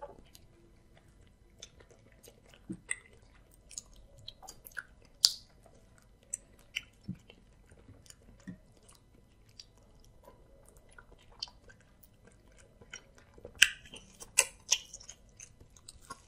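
Close-miked eating sounds: sticky, wet squelches and clicks as bare fingers pull pieces of amala soaked in ewedu and bean soup, mixed with chewing. Scattered sharp smacks give way near the end to a louder, quicker run of wet mouth clicks as a bite is taken.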